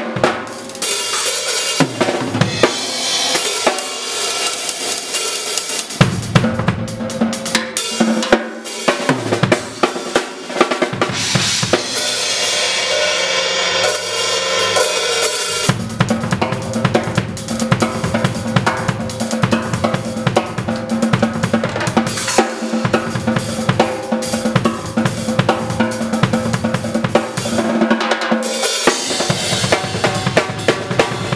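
Solo drum kit with Zildjian and Sabian cymbals played fast and busy, with dense strokes across drums and cymbals. A sustained cymbal wash swells around the middle, then a fast, steady pattern with a continuous low drum pulse carries on to the end.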